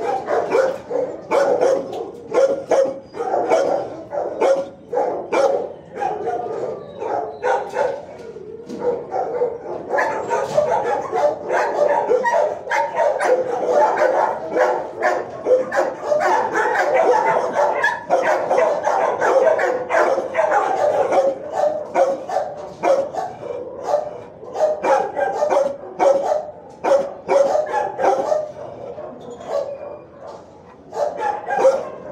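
Several dogs barking continuously in a shelter kennel block, the barks overlapping with no pause.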